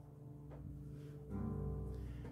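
Guitar strings ringing quietly with sustained notes, a fresh soft chord sounding about a second and a half in.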